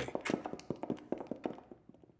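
Footsteps of several people walking away: a quick run of shoe taps on a hard floor that grows fainter and sparser as they move off.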